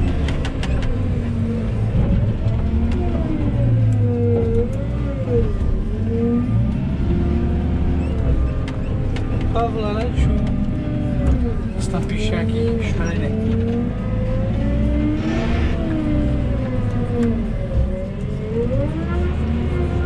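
Diesel engine of a JCB telescopic handler heard from inside its cab, revving up and down repeatedly as the loader boom and bucket work. A few knocks come about halfway through.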